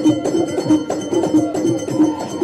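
Moroccan traditional percussion music: a steady, quick beat of ringing metallic clanks, about three a second, over a dense layer of drums and jingles.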